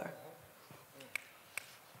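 Faint finger snaps in a quiet pause: two short, sharp snaps about half a second apart in the middle.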